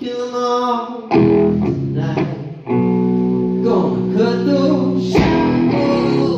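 Live rock band playing loud, held electric guitar chords over bass, with new chords struck about one and about three seconds in, and a drum hit about five seconds in.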